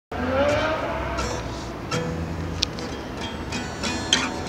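Acoustic guitar being strummed. In the first second a rising whine and rumble like a passing vehicle is the loudest sound, under the guitar.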